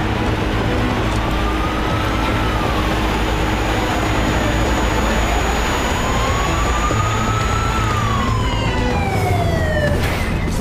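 A siren wailing slowly, its pitch rising and then falling twice, over a dense steady noise and low rumble.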